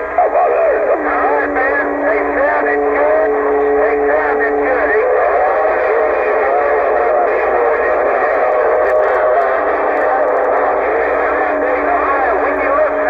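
Cobra 148 CB radio's speaker receiving distant stations on channel 28: voices overlapping and warbling, with steady heterodyne whistles under them. One pair of whistles gives way to a higher one about five seconds in. The sound is thin and narrow, as radio audio is.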